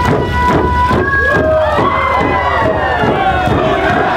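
Many hide hand drums beaten together in a fast, even rhythm, about four beats a second, with a crowd's voices calling out in rising and falling glides over them from about a second in.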